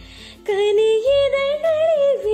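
Female voice singing a slow, ornamented melody with vibrato and pitch glides over a soft instrumental accompaniment. The sung phrase comes in about half a second in, after a brief quiet pause.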